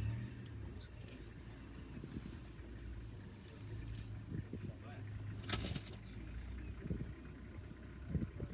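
Vehicle engine idling with a steady low hum, with a brief rushing noise about five and a half seconds in.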